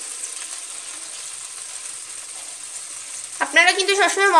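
Mustard paste and spice masala sizzling in hot mustard oil in a pan, a steady hiss.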